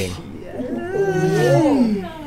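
A man's long, drawn-out groan, its pitch rising and then sliding down as it trails off: a pained wince at a gruesome detail.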